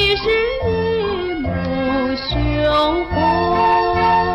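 A woman singing a Mandarin ballad over instrumental accompaniment with regular bass notes; her line glides up and down, then settles into a long held note near the end.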